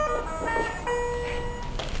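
Video intercom doorbell chime playing a short electronic melody of steady notes that step up and down in pitch, signalling a visitor at the door.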